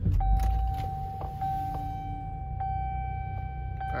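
A 2011 Chevrolet Traverse's 3.6-litre V6 starting: a loud low surge as it catches at the very start, then settling into a steady idle. A steady electronic tone sounds over the idle from just after start-up.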